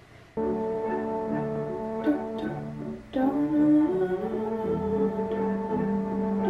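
Upbeat instrumental music from the film's added soundtrack. It starts suddenly about half a second in, breaks off briefly around three seconds, then carries on.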